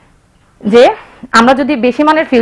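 Speech only: a woman talking, after a short pause at the start.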